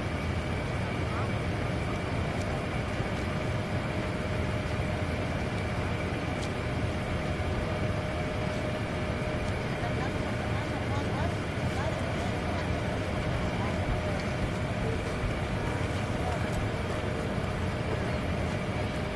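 Niagara Falls roaring steadily, an even rush of falling water that never changes, with indistinct crowd voices underneath.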